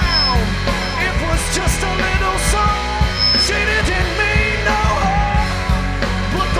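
A live rock band plays an instrumental passage. Electric guitars, bass and drums carry it, with lead lines that slide and bend in pitch over a steady drum beat.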